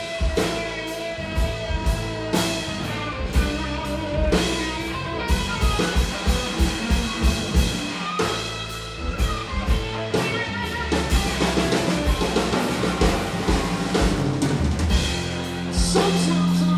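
A live rock trio plays an instrumental passage: an electric guitar over bass guitar and a drum kit. The guitar plays long held notes that bend and waver over a steady drum beat.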